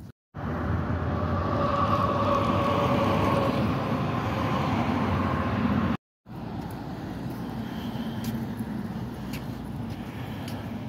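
Road traffic: a loud passing vehicle with a faint whine that drops slightly in pitch as it fades, then steadier, quieter traffic noise. The sound cuts out abruptly twice, briefly each time.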